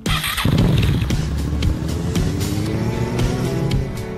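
Motorcycle engine pulling under acceleration, its pitch rising steadily, over background music with a beat. The sound starts suddenly with a brief rush of noise.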